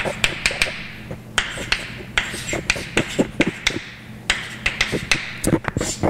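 Chalk writing on a blackboard: an irregular run of sharp taps, with some light scratching as each stroke is made.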